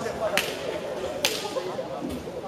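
Two sharp cracks a little under a second apart, over background chatter.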